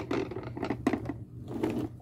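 Plastic wheels of a toy car rolling over brick paving as it is pushed by hand, an uneven rattle with a few small knocks.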